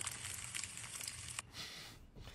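Faint crackling hiss of fire that cuts off with a single click about one and a half seconds in, leaving a fainter hiss.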